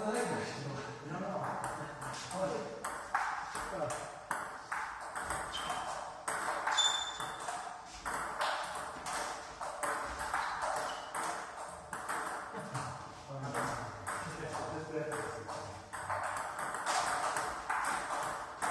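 Table tennis ball in play: repeated sharp clicks as the ball strikes the paddles and bounces on the table, in quick back-and-forth rallies.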